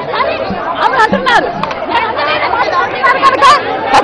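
Heated argument of several women talking loudly over one another at once.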